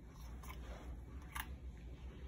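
A few faint, short clicks, about half a second in and again just before 1.5 s, over a low steady hum.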